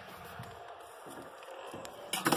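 Faint rustling and scraping as the hand-held camera phone is moved about.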